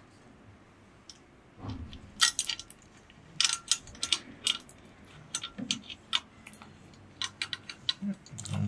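Small nylon zip tie being threaded and pulled tight around a cable on a metal bike rack: several short runs of sharp ratcheting clicks, with a soft handling thump about a second and a half in.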